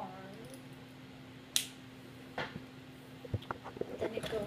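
Hard plastic Lego Bionicle pieces clicking as they are handled and fitted together: a sharp click about a second and a half in, another just under a second later, then a run of small clicks near the end.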